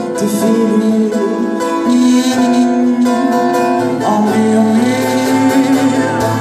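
Live duo playing a song on acoustic guitar and a Les Paul-style electric guitar, with singing over sustained notes.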